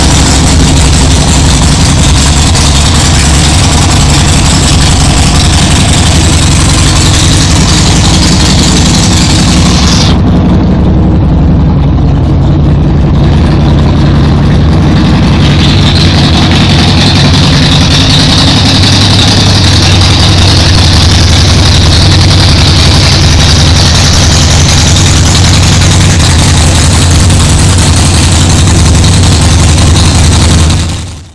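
2012 Harley-Davidson Seventy-Two Sportster's 1200 cc air-cooled V-twin idling through Cycle Shack slip-on mufflers, very loud and close to the recording's limit. About ten seconds in the sound turns duller for a few seconds, then comes back bright.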